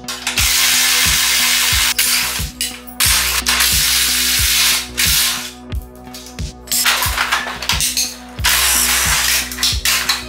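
Cordless impact wrench hammering in three bursts of a second or two each, undoing bolts on a steel motorcycle frame, over background music with a steady beat.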